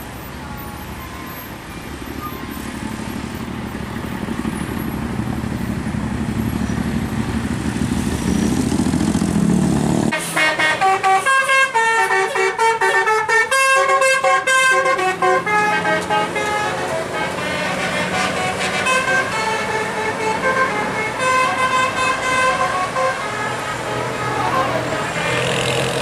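Tour bus engine rumble that builds for about ten seconds. Then the Jasa Karunia bus's multi-tone telolet horn suddenly starts playing a stepping melody that carries on over engine and traffic noise.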